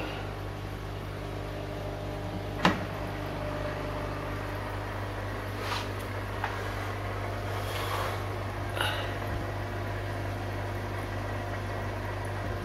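Steady electric hum of small aquarium pumps running in plastic fry tanks, with one sharp click about two and a half seconds in and a few faint knocks later.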